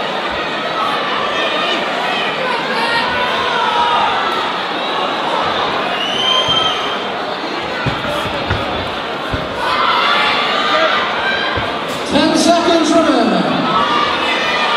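Boxing crowd shouting and cheering: many voices over a steady din, with one loud yell that rises and falls near the end.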